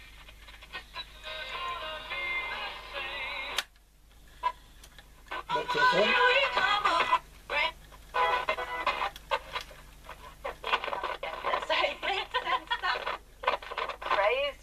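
Roberts RT22 transistor radio playing a medium-wave broadcast through its small speaker: music with no treble at first. A click about three and a half seconds in is followed by a brief quiet gap, then a station with a voice and music.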